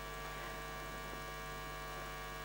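Steady electrical mains hum, a constant buzz of several fixed tones that does not change in level.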